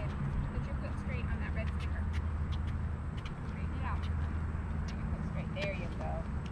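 A steady low rumble with a few faint, distant children's voices and scattered light clicks.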